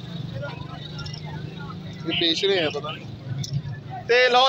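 Steady low hum of a motor vehicle engine, with a man's voice calling briefly about two seconds in.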